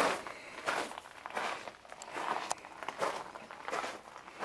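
A hiker's footsteps on the sandy, gravelly floor of a dry wash: about six steady steps, one roughly every 0.7 seconds.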